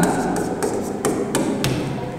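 Chalk tapping and scratching on a blackboard while writing, with a string of irregular sharp taps.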